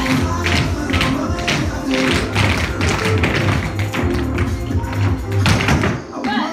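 Tap shoes of several dancers striking a hard studio floor in quick rhythmic clusters of clicks, over a recorded song with a steady bass line.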